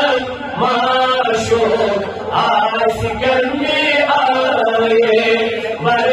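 A man singing a Kashmiri naat, a devotional chant in praise of the Prophet, in long held notes.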